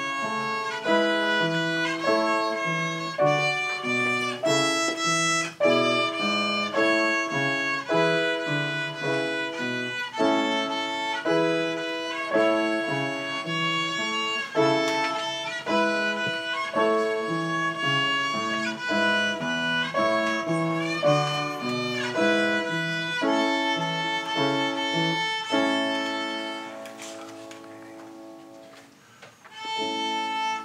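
A young student playing a melody on the violin, note after note, over a lower accompaniment. Over the last few seconds a long held note fades away, and the playing picks up again at the very end.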